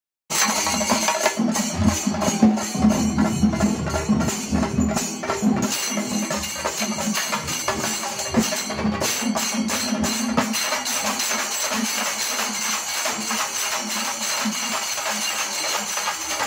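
Chenda melam: several chenda drums beaten with sticks in fast, dense strokes over the constant clashing of ilathalam brass hand cymbals. It starts abruptly just after the beginning, and the deep drum strokes are heaviest in the first five seconds or so.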